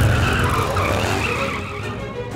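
Cartoon sound effect of a vehicle peeling away: tyres screeching over an engine rumble, loudest at the start and fading.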